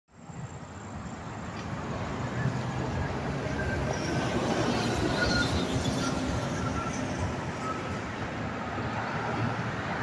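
Steady drone of road traffic on a multi-lane parkway, with faint whining tones on top. It swells up over the first couple of seconds.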